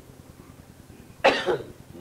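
A single sharp cough a little past a second in, in two quick pushes, as a person in the room coughs during a pause in the chanting.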